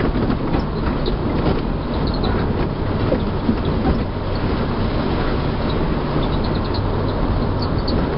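Steady low rumble of a 4x4 driving along a rough unmade lane, heard from inside the cab, with small rattles and clicks from the vehicle over the uneven ground.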